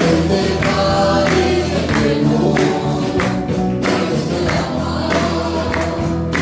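Punjabi Christian song: voices singing over music with a steady percussion beat.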